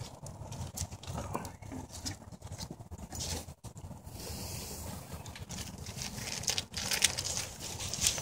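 Wood fire crackling and popping in a metal fire pit: irregular sharp pops over a low rumble, with a loud pop about seven seconds in.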